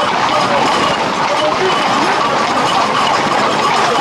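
Hooves of Camargue horses and bulls moving together on a paved street, under a steady noise of crowd voices.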